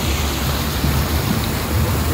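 Illuminated fountain's water jets splashing steadily into the basin, an even rush of falling water, with a low rumble underneath.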